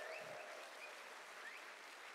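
Audience applauding, fairly faint and slowly dying away.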